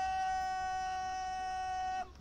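A drill commander's shouted parade-ground command, one long call held loud on a single high pitch: the drawn-out preparatory word of a drill order given to troops in formation.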